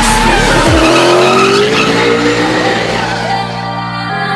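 BMW E46 drift car sliding: the engine revs with a rising pitch and the tyres squeal, mixed with background music. The car sound fades out near the end, leaving the music.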